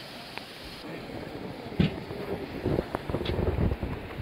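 Wind gusting on the microphone in irregular low rumbles, over the steady wash of surf on the beach. A sharp knock about two seconds in is the loudest moment, and a fainter one follows.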